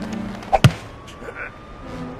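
Two sharp impacts in quick succession about half a second in, over a low steady hum.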